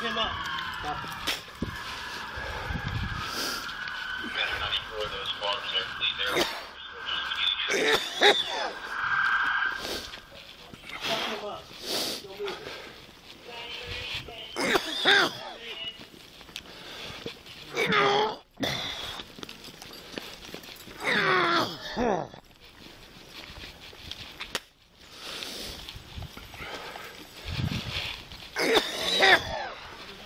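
Indistinct voices of people talking and calling out, with a steady two-pitched tone through the first ten seconds and a short laugh about eight seconds in.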